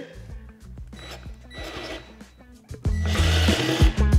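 Ryobi cordless drill boring a hole through plywood. The drill's motor and bit come in loud about three seconds in and keep running, over soft background music.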